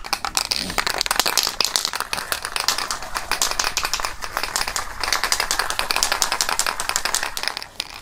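Aerosol can of Army Painter white primer being shaken hard: the mixing ball rattles inside in a fast, continuous run of clicks, mixing the primer before spraying.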